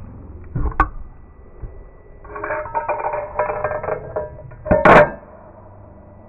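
Glass bottle knocking against a metal bottle opener, a couple of sharp clicks. Then a short two-second phrase of plucked-string-like music. Then a loud sharp pop with a hiss as the cap is levered off, the loudest sound.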